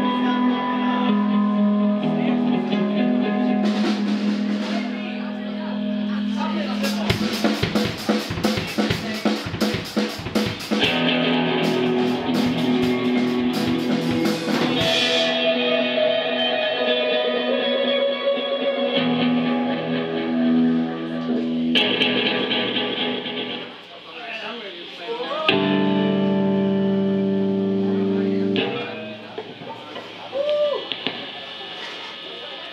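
Electric guitar and drum kit played loosely at a soundcheck: held guitar notes and chords, with a stretch of fast drum hits and cymbals from about seven seconds in lasting some eight seconds, and a sliding note near the end.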